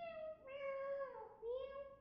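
Alexandrine parakeet mimicking a cat's meow, three meows in quick succession, the middle one the longest and dipping in pitch at its end.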